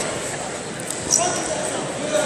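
Reverberant sports-hall ambience of indistinct coaches' and spectators' voices, with a single sharp smack about a second in.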